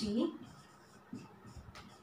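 Marker writing on a whiteboard: a few faint, short scratching strokes. A woman's voice finishes a word at the very start.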